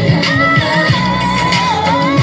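Pop song with a sung melody line over a steady beat of deep drum hits, played as the backing track for a dance routine.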